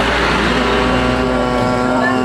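A man's voice holding one long, steady shouted note, over a low rumble.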